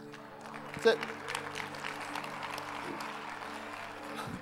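Congregation applauding, building from about half a second in and carrying on steadily, over soft sustained background music.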